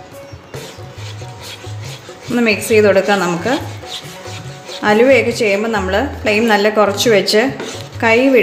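Slotted spatula stirring thick pumpkin purée in a nonstick pan, a soft rubbing, under background music with a low pulse. A voice comes in about two seconds in, is loudest through most of the rest, and breaks off briefly near the middle.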